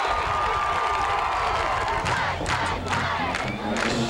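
Football crowd in the stands cheering and shouting after a touchdown, with a series of sharp hits in the second half.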